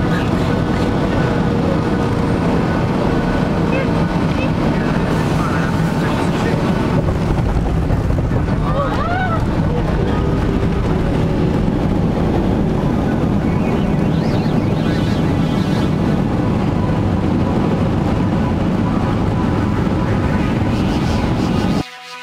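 Airliner cabin noise during the landing rollout: a loud, steady roar of the jet engines and the wheels on the runway, which cuts off abruptly near the end.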